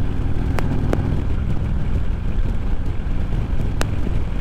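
Harley-Davidson Road King Special's V-twin engine running steadily at highway speed, mixed with heavy wind noise on the microphone. A few brief clicks come through.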